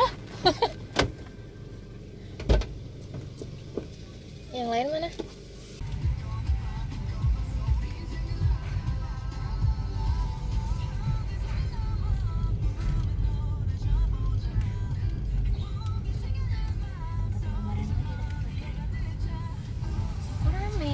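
A few sharp clicks and a knock inside a car, then from about six seconds in a steady low rumble of the car's engine running, heard from inside the cabin.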